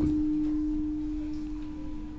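A steady, single mid-pitched tone, the ring of the microphone's public-address system, sounding in a gap between sentences.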